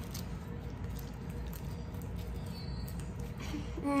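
Fluffy slime with small cubes mixed in, squeezed and kneaded by hand: a few faint, scattered squishes over a steady low hum.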